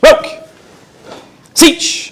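Loud, sharp shouted Japanese counts, 'roku' right at the start and 'shichi' about a second and a half later, calling the moves of a karate kata one at a time.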